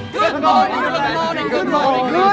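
Several people's voices chattering and laughing together, with no clear words.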